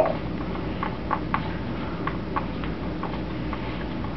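Spatula stirring a dry, chunky alginate impression mix in a mixing bowl: soft, irregular scrapes and taps against the bowl, over a steady low hum. The mix has too little water and will not go smooth.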